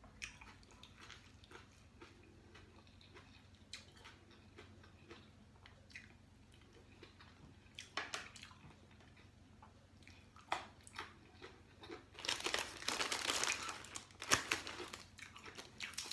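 A person eating a salmon and shrimp salad: quiet chewing with occasional light clicks of chopsticks against the plate, then a few seconds of loud, crisp crunching and rustling near the end.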